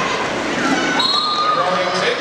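Roller skate wheels rolling and knocking on a gym floor as a pack of skaters passes, with voices calling out over them and a shout about halfway through.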